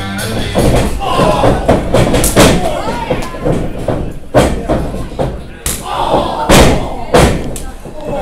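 Wrestlers' bodies slamming onto a wrestling ring's canvas and boards: a series of sharp thuds, the loudest in the second half, amid voices in the hall.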